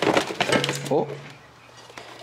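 A quick run of crackling clicks in the first half-second as a cardboard shoebox and a pair of football boots are handled, followed by a man's short "oh".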